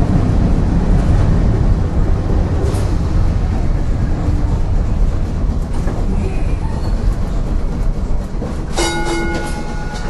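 Peter Witt streetcar running along the track, heard from inside the car: a steady low rumble of motors and wheels on the rails. Near the end a short ringing tone lasts about a second.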